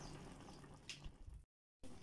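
Near silence: faint simmering of a milky chicken curry in a wok, broken by a brief dropout to total silence about three quarters of the way through.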